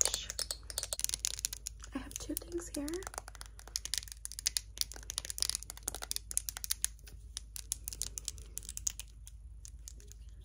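Rapid, irregular clicking and tapping of long acrylic nails on makeup packaging: a gold-capped bottle and a concealer tube being handled and tapped.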